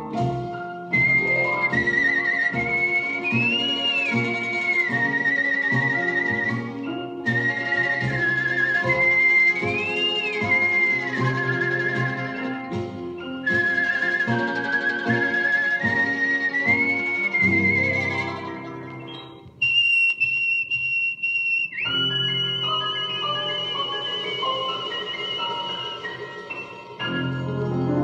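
A man whistling a blues melody with a strong vibrato and upward glides over a band accompaniment, in phrases broken by short pauses. Near the end he holds one long high whistled note.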